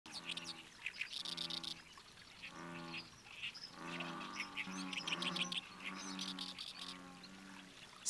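Pond ambience at dusk: frogs calling in low, drawn-out croaks about once a second, with many short, high bird chirps over them.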